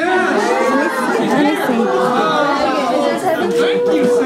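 Several people talking over one another, indistinct group chatter with no single clear voice; one voice draws out a long held sound near the end.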